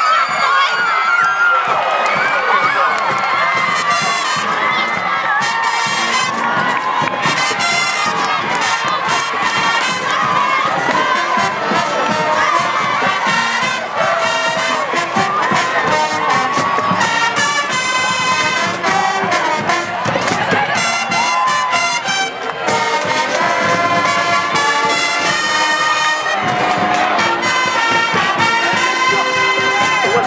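High school marching band (two schools' bands combined) playing, brass carrying held notes over sharp hits, with a crowd cheering and shouting throughout. The first few seconds are mostly cheerleaders shouting and cheering before the brass comes up.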